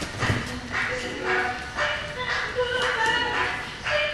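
Boxing gloves hitting focus mitts in pad work, a few sharp smacks, over a high-pitched voice that runs throughout.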